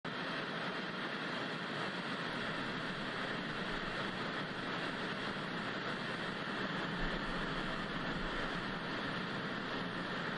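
Steady hiss of television static (white noise), even and unchanging throughout.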